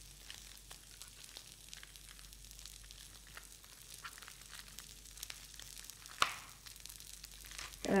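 Knife cutting lettuce on a cutting board: soft, irregular taps and crunches, with one sharper knock about six seconds in. Under it, corn kernels sizzle faintly as they toast in a pan on the stove.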